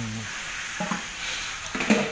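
Steady hissing background noise, with brief snatches of a man's voice at the start and about a second in, and speech starting near the end.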